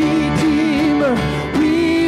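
A live worship band playing a contemporary praise song: a woman sings the lead melody with backing singers, over bass, guitars, drums and keyboard, holding a long note near the end.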